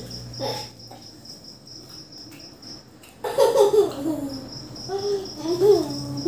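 A cricket chirping in fast, even pulses in the background. From about three seconds in, a young child makes wordless humming and vocal noises while chewing.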